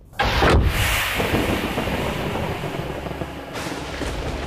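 A sudden loud boom-like hit about a split second in, followed by a sustained rumbling noise.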